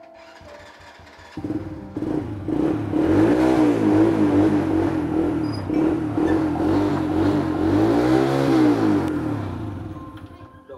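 Small motorcycle engine catching about a second and a half in and being revved up and down, with two long rises and falls in pitch, then dropping away near the end.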